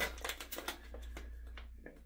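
Crinkling and rustling of a coffee bag being handled, a run of irregular soft crackles that thin out toward the end.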